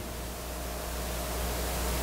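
A steady hiss with a low hum underneath and a faint thin tone, growing slightly louder: the background noise of the sound system and room during a pause in speech.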